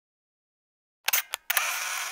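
Camera shutter sound effect: a quick run of sharp clicks about a second in, then about half a second of steady mechanical whirring, like a film advance.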